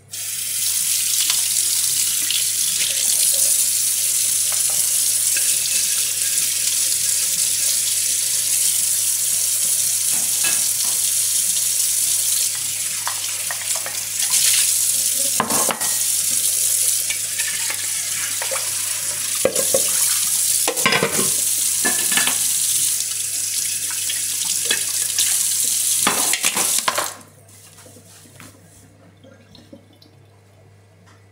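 Kitchen tap running steadily into a sink, turned on at the start and shut off abruptly a few seconds before the end. A few short knocks and clatters sound over the running water in the second half.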